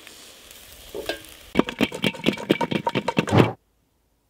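Wooden spatula stirring and scraping grilled pork and sliced onions in an enamel pot: a knock about a second in, then a quick run of scrapes with the pot ringing, cut off suddenly near the end.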